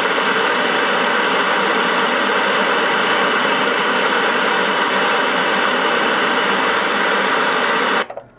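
Loud, steady static hiss, as from an untuned analogue television, cutting off suddenly at the end.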